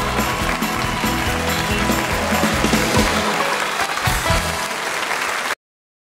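Audience and band applauding over the last notes of the band's accompaniment, which stop about four and a half seconds in. The sound cuts off abruptly near the end.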